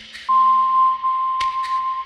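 Generative pentatonic ambient electronic music. A pure, loud, sustained synth tone enters about a third of a second in over a lower tone that fades away. Pairs of short soft ticks recur about every second and a half.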